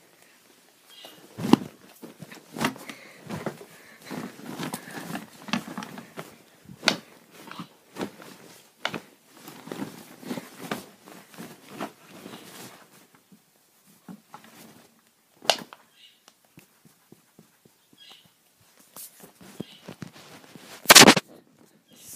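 Plush toys being bashed together in a mock fight, with soft irregular thumps, fabric rustling and handling knocks against the recording phone, and one much louder thump about a second before the end.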